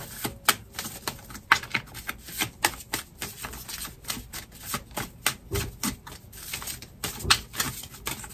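A deck of tarot cards being shuffled overhand, cards dropping from one hand into the other with irregular sharp clicks and slaps.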